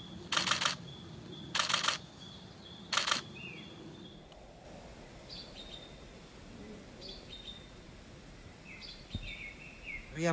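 Three short bursts of a camera shutter firing rapidly in burst mode within the first three seconds, then faint short bird chirps.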